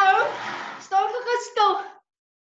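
Speech: a woman's voice, breathy during the first second.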